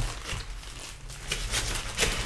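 A large painting on paper being slid back into a portfolio folder, the sheets and folder rustling in short, irregular scrapes.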